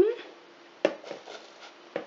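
Chocolate streusel crumbs dropped by hand from a plastic bowl into a metal springform pan: a faint crumbly rustle with one short, sharp click a little under a second in.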